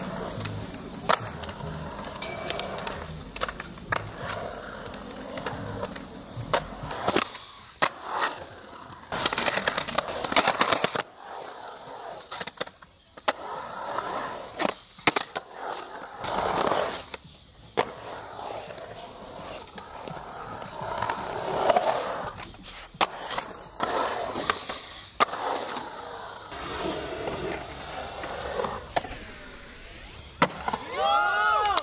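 Skateboard wheels rolling on concrete, broken by many sharp clacks of the board popping and landing, with scrapes of the board on the concrete edges.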